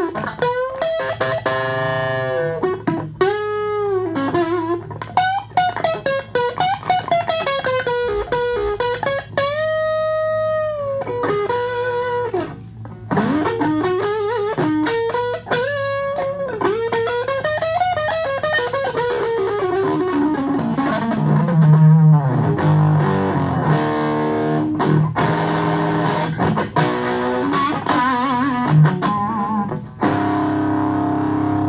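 Electric guitar played through an Orange Crush Micro amp into a Hartke 4x12 cabinet: a run of single notes, many bent so they slide up and down in pitch. The playing turns to louder, lower chords about twenty seconds in.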